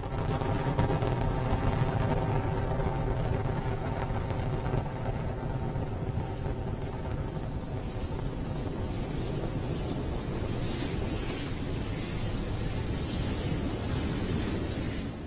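Falcon 9 rocket's nine Merlin first-stage engines during ascent, a steady low rumble that fades slightly as the rocket climbs.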